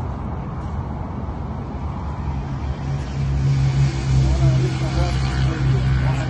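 A steady low engine hum, growing louder about three seconds in, with faint indistinct voices over it.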